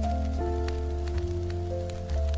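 Smooth jazz instrumental: piano chords held over a deep bass line, with a steady patter of rain mixed in underneath.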